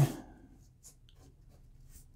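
Faint soft rustling and light flicks of cardboard trading cards being moved through a stack by hand, with a few brief ticks between about half a second and a second and a half in.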